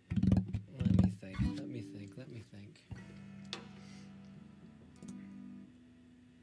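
Acoustic guitar being picked: a few loud notes at the start, then a chord struck about three seconds in that rings on and slowly fades, with another note added near the end.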